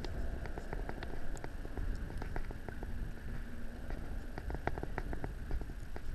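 Small, irregular clicks and taps of needle-nose pliers working a sabiki hook out of a needlefish's mouth, over a steady low rumble.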